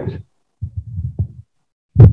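Muffled low thumps and rumble on a microphone, ending in one short, loud thump just before the next speaker talks.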